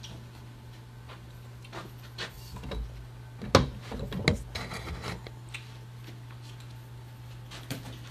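Handling noise from the camera being picked up and re-aimed: scattered knocks, taps and rubs, the loudest thump about three and a half seconds in with several more over the next second and a half, over a steady low hum.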